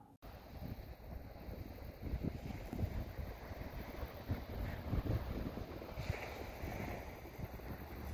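Wind buffeting the microphone in irregular gusts, over a low steady rush of sea surf.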